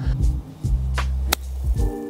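A golf club striking the ball on a short pitch shot: one sharp click a little over a second in, over background music.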